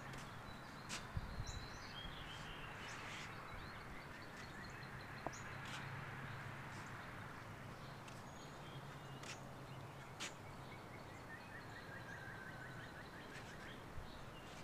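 Faint backyard ambience of songbirds: scattered high chirps and long trills of rapid repeated notes that slowly fall in pitch, over a low steady hum.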